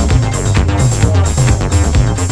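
Electronic dance music mixed live by a DJ, with a steady, regular beat over a moving bass line.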